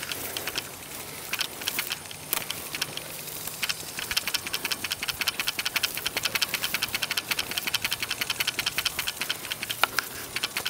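Dry grass stalks and foliage rustling and crackling as they are shaken and brushed close to the microphone, scattered at first, then a quick, regular run of crisp ticks from about four seconds in.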